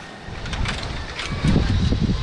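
Wind buffeting a phone microphone high on an open bungee platform: an uneven low rumble of gusts that swells about one and a half seconds in.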